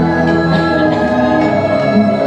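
Music: a choir singing in long held notes over an instrumental backing.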